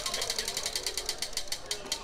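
Prize wheel spinning, its clicker ticking against the pegs in a fast run of clicks that slows as the wheel winds down.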